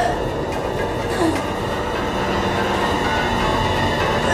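A steady, dense rumbling drone with faint sustained tones under it: a sound-design bed in a film trailer.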